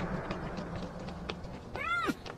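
A low steady drone, then near the end a person's high wailing cries of "ah", each rising and then falling in pitch.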